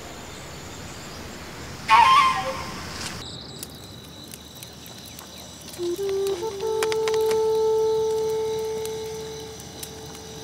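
Film soundtrack with a short loud sound about two seconds in. From about six seconds a flute-like wind instrument plays a few rising notes, then holds one long note that slowly fades.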